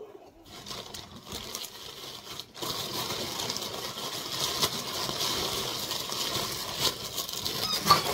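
Plastic mailer bag crinkling and rustling as hands open it and pull out a toy, faint at first and louder from about two and a half seconds in, with a few sharp crackles.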